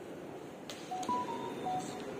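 A click, then about four short electronic beeps at two or three pitches in quick succession, over steady background hiss.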